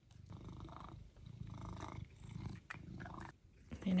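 Domestic cat purring while being fed a treat, in stretches of about a second with short breaks between them, which stop shortly before the end.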